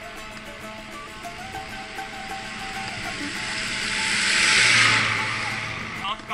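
An oncoming car passing close by: its tyre and engine noise swells to a peak about five seconds in, then fades. Background music with steady tones plays throughout.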